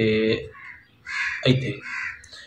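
Harsh calls of a bird, heard under short bits of a man's speech.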